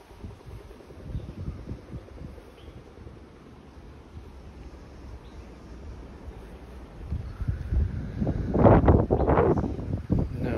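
Wind buffeting the phone's microphone: a low, rough rumble that grows into stronger gusts over the last couple of seconds.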